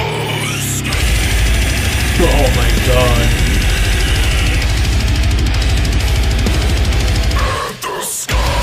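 Heavy beatdown hardcore metal recording: down-tuned, distorted riffing with a heavy low end and drums, with a harsh vocal. It drops out briefly near the end.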